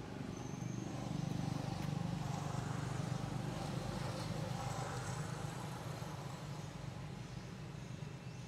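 A motor vehicle's engine passing by: a low steady rumble that swells about a second in and slowly fades.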